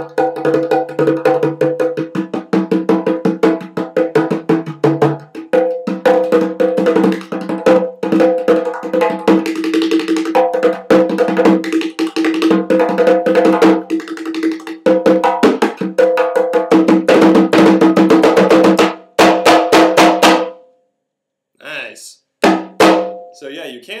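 Three-headed stoneware darbuka (doumbek) with stingray-skin heads, played with fast hand and finger strokes in a dense, rolling rhythm with ringing pitched tones. The playing grows louder and denser and then stops about 20 seconds in. A few single strokes follow near the end.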